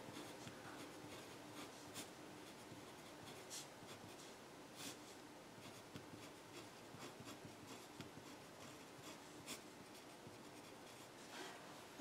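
Faint scratching of handwriting on paper, with a few light ticks from the writing tip as numbers are written out.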